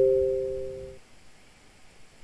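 Short electronic notification chime: two steady notes struck together, fading out and cutting off about a second in.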